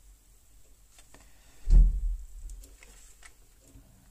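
A few faint clicks of small tools being handled on a wooden workbench, with one dull, deep thump just under two seconds in.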